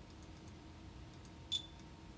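A single short, high-pitched beep from a Zebra TC20 handheld's barcode scanner, about one and a half seconds in, confirming a successful read of the QR code. It sounds over a faint steady room hum.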